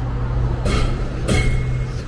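City bus engine running as the bus passes close by, with two short hisses a little over half a second apart and a brief high squeal near the end.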